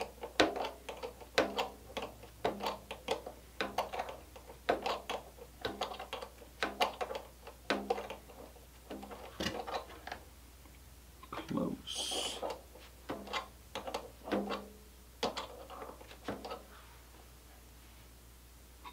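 Threaded steel pushrod being twisted by hand into plastic ProLink-style ball links: short creaking clicks, about two a second, thinning out later, as the threads bite into the plastic.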